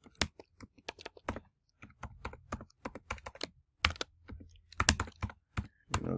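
Typing on a computer keyboard: an irregular run of key clicks as an email address is entered, with a few sharper keystrokes about four and five seconds in.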